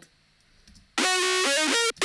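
Distorted saw-wave synthesizer lead, made in Sylenth1, played back after a second of near silence: a short phrase of several stepped notes begins about a second in, with a brief break just before the end.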